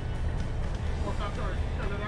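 Men talking in short exchanges over background music, with a steady low rumble underneath.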